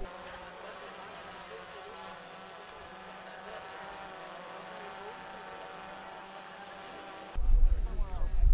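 Faint, steady murmur of many distant voices from a large group standing together in an open stadium. Near the end it gives way abruptly to louder, closer talk with a low rumble.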